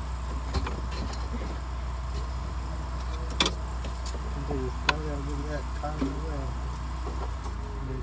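Sharp clicks and knocks of plastic dashboard trim and wiring connectors being handled, the loudest about three and a half seconds in and again near five seconds, over a steady low hum.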